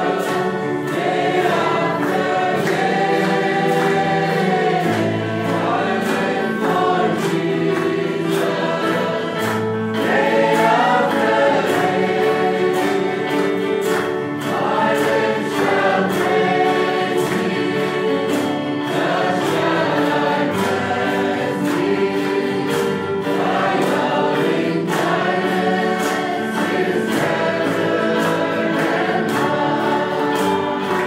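A choir singing worship music, several voices holding and moving between sustained notes without a break.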